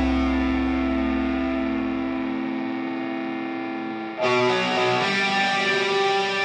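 Atmospheric post-black metal recording: a distorted electric guitar chord rings out and slowly fades, its deep bass dropping away partway through. About four seconds in, a new distorted guitar chord is struck and the full band comes back in loud.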